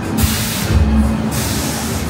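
A loud burst of hissing air, lasting just over a second, over background music with a steady bass beat.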